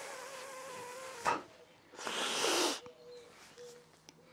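A person straining hard on a wrench: a faint, wavering strained hum, a short knock about a second in, then a heavy breath.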